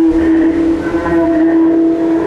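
A single string stretched against the stainless-steel drum of a street urinal, bowed with a violin bow and picked up electrically: one loud, sustained droning note rich in overtones, dipping briefly near the end as the bow changes direction.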